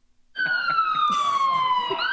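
Emergency vehicle siren: one long falling wail that starts abruptly about a third of a second in, after a moment of near silence.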